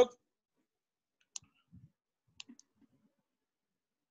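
A few faint, sharp clicks over an otherwise quiet line: one about a second and a half in, then two close together about a second later.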